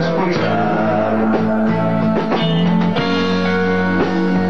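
Live rock band playing an instrumental passage with no singing: guitar lines over a steady bass and a regular beat.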